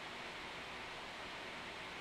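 Steady, even background hiss with no distinct sounds: room tone between words.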